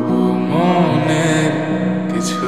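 Slowed-and-reverb lofi remake of a Bangla pop song: a voice sings a long, wavering line over sustained chords.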